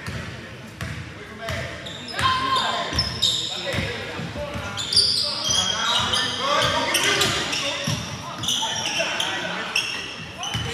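Basketball game on a hardwood court in a large gym: a ball bouncing, sneakers squeaking and players and spectators calling out, with the hall's echo.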